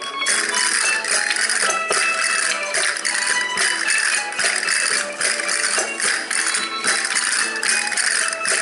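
Live folk dance music: melody instruments over dense shaken percussion that pulses in a steady beat.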